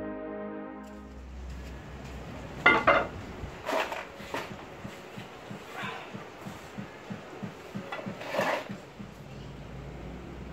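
Solo piano music ends about a second in. After it comes workshop sound of hand work on wooden boat-frame timbers: about six short, sharp knocks and scrapes, over a run of faster, evenly spaced low pulses.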